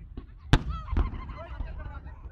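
Aerial fireworks going off: a sharp bang about half a second in and a second bang around a second in, with a wavering higher-pitched sound between them.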